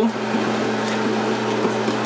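A steady low machine hum, like a fan or air conditioner, runs under a few faint clicks and scrapes from a hand-held can opener being turned around the rim of a tin can.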